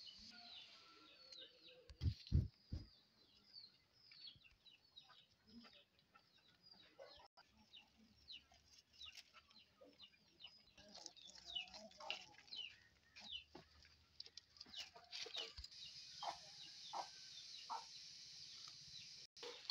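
Faint, repeated short falling chirps of small birds all through, with three low thumps about two seconds in.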